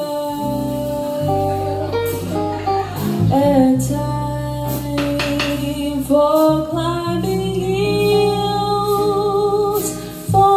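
A female vocalist sings a slow jazz ballad live with a small band: held sung notes over electric bass, hollow-body electric guitar and drums, with a few cymbal hits.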